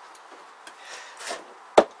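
A single sharp knock of a hand against the side of a plywood cupboard unit, near the end, over faint room sound.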